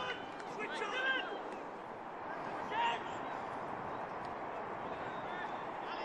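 Open-air football pitch ambience: a steady background hiss of outdoor noise with faint distant shouts from players, about a second in and again near three seconds.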